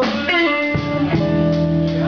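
Live blues band playing a slow blues, with electric guitar to the fore over bass and drums. This is an instrumental stretch between vocal lines, with sustained, bending notes.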